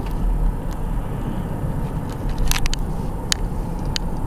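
Steady engine and tyre noise heard inside a moving car's cabin, with a few scattered sharp clicks.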